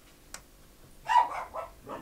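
A dog barking several short times in quick succession, starting about a second in.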